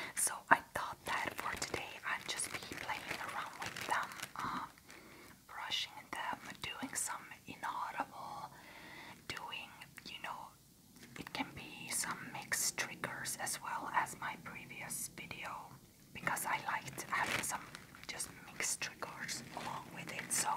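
Close-up, unintelligible ASMR whispering, with short pauses about halfway through.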